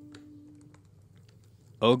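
A quiet pause in a spoken reading: faint room tone with a low steady hum that dies away within the first second and a few faint clicks. A reading voice comes back in near the end.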